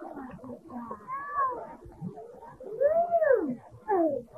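A young child's high, drawn-out cries or squeals that rise and fall in pitch, several short ones and then a longer, louder one about three seconds in.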